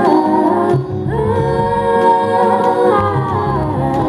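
Live indie-rock band music: several voices, women's among them, singing in close harmony. After a short phrase they hold a long chord from about a second in, then drop back into the song near the end, with guitar and low bass underneath.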